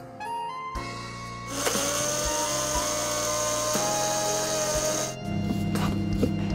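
Electric mixer grinder running, its blades grinding bread slices into coarse breadcrumbs. A steady motor whine starts about a second and a half in and cuts off about five seconds in, over background music.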